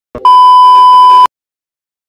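A television test-pattern tone sound effect: one loud, steady, high-pitched beep lasting about a second, with a brief click just before it. It cuts off suddenly.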